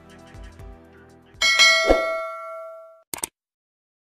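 Soft background music fades out, then an outro chime sound effect rings out about a second and a half in and dies away over about a second and a half. Near the end come two quick clicks.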